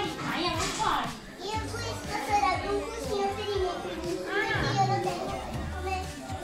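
A young child laughing and chattering without clear words, over background music.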